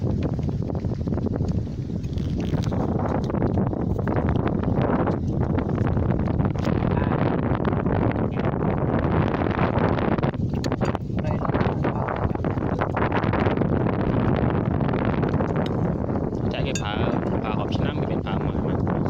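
Men's voices talking, over steady wind noise on the microphone.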